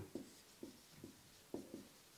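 A marker writing on a whiteboard: about five short, faint strokes as a word is written, the firmest about one and a half seconds in.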